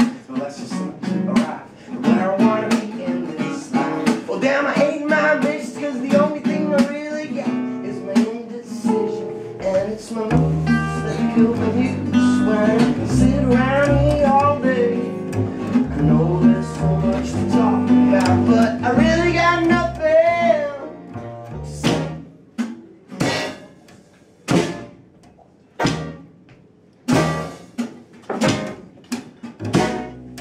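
Live acoustic band playing an instrumental passage: banjo and acoustic guitar, with an upright double bass joining about ten seconds in. Near the end the playing thins out to sparse, separate accented hits with short gaps between.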